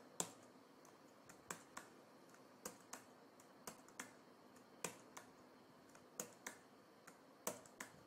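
Faint computer keyboard keystrokes, about a dozen irregular clicks, many in quick pairs, as single letters are typed into spreadsheet cells one after another.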